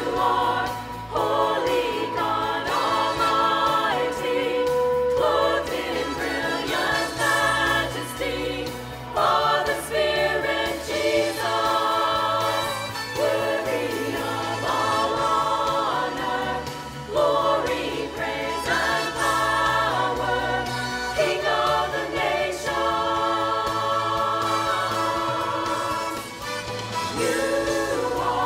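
Church choir singing in phrases a few seconds long, over an accompaniment that holds steady low notes beneath.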